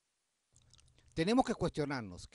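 Dead silence at first, then a few faint clicks, then a man's voice starting to speak just over a second in.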